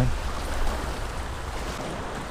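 Small choppy waves lapping and washing against the dock pilings and shoreline, over a steady low rumble of wind on the microphone.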